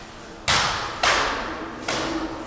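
Three sharp smacks of hand and leg strikes landing on a karateka's body during Sanchin kitae testing, about half a second to a second apart. The first two are the loudest, and each one echoes briefly in the hall.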